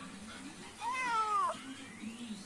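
A hungry kitten meowing once, a single call of under a second whose pitch rises and then falls.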